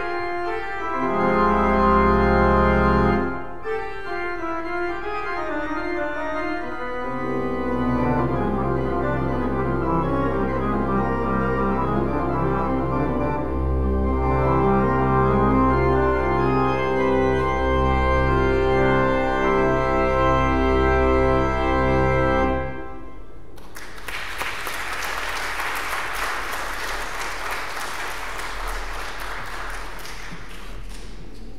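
Pipe organ playing sustained full chords over deep pedal bass notes, ending on a final chord that cuts off about 23 seconds in. Audience applause follows.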